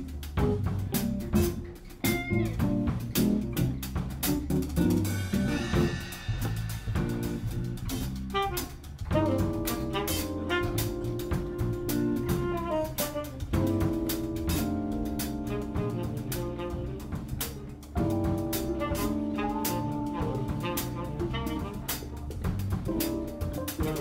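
A small jazz band playing: a drum kit with bass, saxophone and keys. Long held chords start about nine seconds in and change every few seconds.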